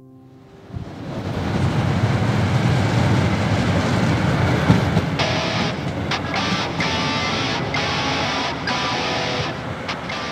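Street traffic noise rising about a second in: a steady rumble of passing vehicles, with a hiss that cuts in and out several times in the second half, under soft guitar music.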